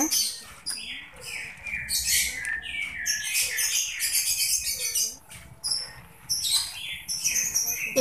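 Small birds chirping busily, many short falling chirps one after another, with the light splash and patter of handfuls of mung beans dropped into a pot of water.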